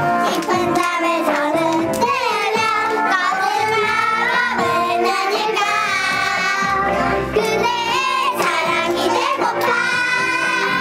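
A group of young girls singing a song together.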